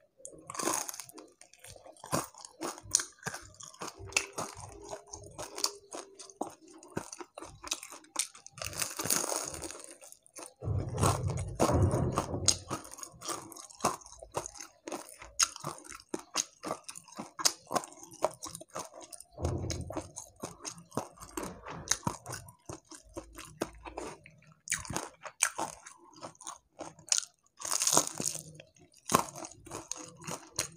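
Close-miked chewing and crunching of crispy deep-fried catfish (lele krispy), a steady run of small crisp crackles as the battered fish is bitten, chewed and pulled apart by hand, with several louder crunching spells.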